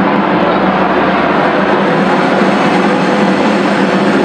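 Bagpipes playing, with a steady drone.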